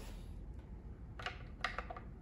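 Three light metallic clicks, a little over a second in, as a rifle bolt is handled and slid into the rear of the Hardy Hybrid's aluminium receiver.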